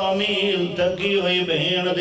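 A man's voice chanting a drawn-out, melodic recitation into a microphone, holding long notes that bend in pitch.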